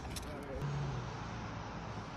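Outdoor city ambience: steady road-traffic noise, with a low vehicle engine hum that swells about half a second in and then fades, and faint voices in the background.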